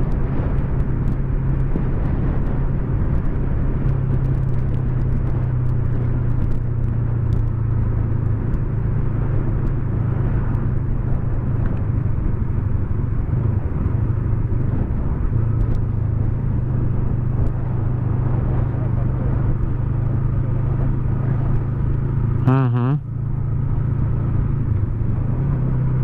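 Yamaha MT-03 motorcycle engine running at a steady cruise, heard from the rider's seat with wind noise, with a brief change in the sound about three quarters of the way through.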